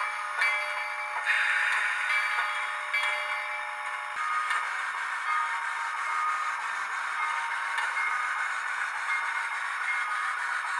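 Digitally sampled steam-locomotive sound from a Soundtraxx Tsunami2 DCC sound decoder, playing through the small onboard speaker of a running HOn3 brass 2-8-2 model. It gives several short bursts in the first few seconds, then a steadier hiss with faint steady tones.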